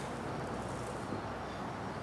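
Steady, faint outdoor background noise, a low even rumble and hiss, with no distinct sound in it.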